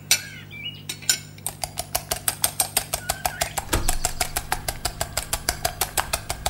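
Kitchen sound effect: rapid, evenly spaced clicking, about eight clicks a second, starting about a second and a half in after a few scattered clicks, over a steady low hum, with a low thump near the middle.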